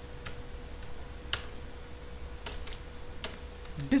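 A handful of separate keystrokes on a computer keyboard, spaced apart with pauses, the loudest about a third of the way in, over a faint steady hum.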